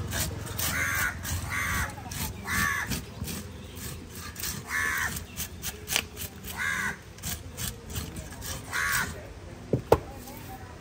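A crow cawing about six times at irregular intervals, over repeated rasping strokes of a hand scaler scraping the scales off a large giant trevally. A single sharp knock near the end is the loudest sound.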